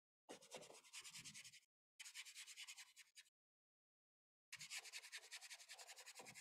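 Paintbrush scrubbing paint onto a canvas in quick back-and-forth strokes, blocking in a first coat; three faint spells of brushing with short pauses between, the last starting about four and a half seconds in.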